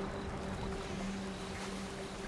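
Calm fantasy ambient music: a low synth drone holding a steady pitch, over a steady background hiss of running water.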